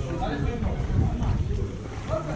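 Indistinct voices of people talking in the background, over a heavy low rumble of wind on the microphone.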